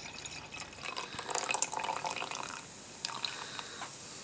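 Bottled ale being poured from a glass bottle into a glass. The pour splashes and fizzes, busiest from about a second in to the middle, and there are a couple of small clicks near the end.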